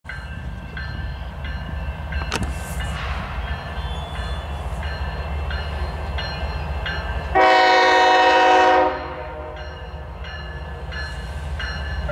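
Diesel locomotive air horn on an approaching train, sounding one long blast of about a second and a half past the middle, over a steady low rumble.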